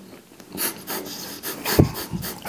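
A person chewing food with the mouth closed, with short noisy breaths through the nose between bites.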